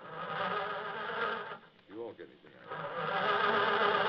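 Two loud, steady buzzing tones, each about a second and a half long with a short gap between them: a comic buzzer sound effect from a prop machine.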